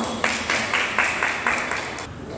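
Hands clapping: a few people applauding together in a steady beat of about four claps a second.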